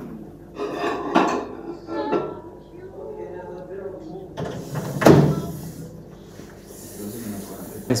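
Handling sounds with one sharp clunk about five seconds in, like a cupboard door or appliance part being shut, over faint voices.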